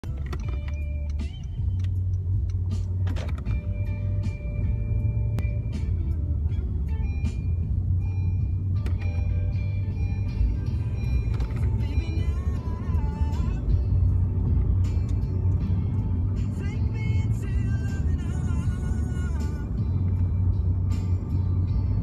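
Steady low engine and road rumble inside a moving car's cabin, with music playing over it.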